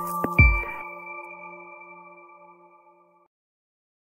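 Electronic intro jingle ending: two deep hits near the start, then a held chord of several steady tones that fades out over about three seconds.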